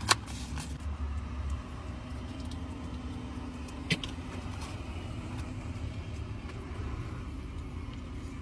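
Steady low rumble inside a car's cabin, with a couple of faint clicks, one right at the start and one about four seconds in.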